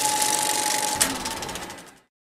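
Rapid, even mechanical clatter like a film projector running, used as a title-card sound effect, with a steady high tone beneath it. There is a sharp accent about a second in, and the clatter then fades out.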